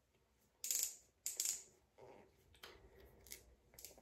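Ratcheting clicks of a Revlon Kiss Cushion Lip Tint pen's twist-up barrel being turned to push the tint up to the cushion tip: two short bursts about a second in, then a few faint ticks.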